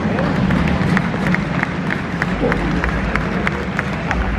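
A large indoor crowd's murmur with scattered hand-clapping, several separate claps a second, uneven rather than a full ovation.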